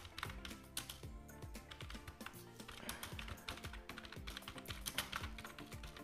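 Typing on a computer keyboard: a quick, irregular run of faint key clicks, over quiet background music.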